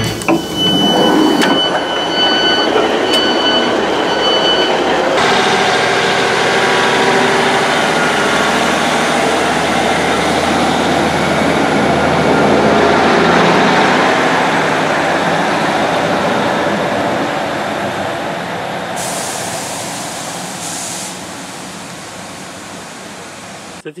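Door warning beeps of a Class 150 Sprinter diesel multiple unit sound for a few seconds after its door-open button is pressed. Then comes the train's engine running as it pulls away from the platform, with a faint rising whine. It fades gradually over the last several seconds.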